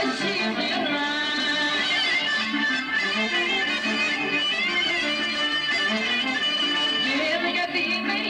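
Live Greek Sarakatsani folk dance music: clarinet, harmonio (keyboard) and electric guitar playing an ornamented, wavering melody at steady volume.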